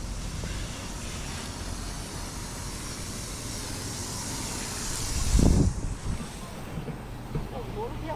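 Water from a garden hose splashing into a plastic bowl, a hiss that grows louder and then cuts off suddenly a little past halfway, with a loud gust of wind on the microphone just before it stops.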